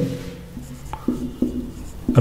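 Felt-tip marker writing on a whiteboard: short scratchy strokes of the pen tip across the board as figures are written.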